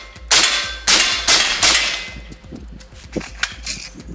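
Rifle shots from an AR-57 upper (5.7×28 mm) mounted on a 3D-printed lower receiver being test-fired: four shots in quick succession in the first two seconds, each trailing off.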